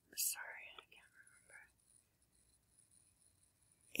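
A man whispering under his breath for about a second and a half, then near silence.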